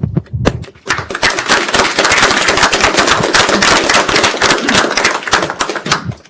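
Audience applauding: a few scattered claps that swell into full applause about a second in.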